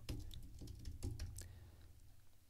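Computer keyboard keys clicking as someone types, about seven separate keystrokes over a low steady hum.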